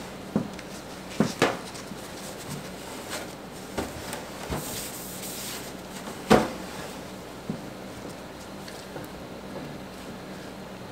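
Scattered knocks and clunks of a clear plastic tub and utensils being handled on a stainless steel worktop, the loudest about six seconds in, with a brief rustle of paper towel a little before it.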